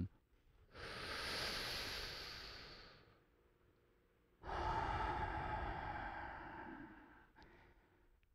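A man taking one deep breath: a long, hissing inhale of about two seconds, a pause, then a long, sighing exhale of about three seconds that fades out. The breath is close-miked on a headset microphone.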